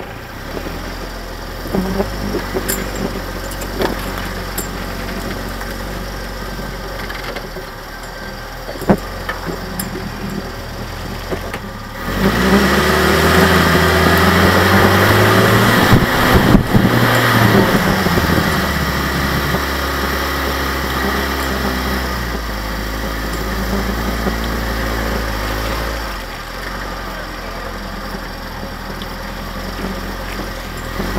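Willys flat-fender jeep engine running as the jeep drives a rough snowy trail, with a few sharp knocks from the jeep in the first ten seconds. The engine gets clearly louder from about twelve seconds in and eases back about ten seconds later.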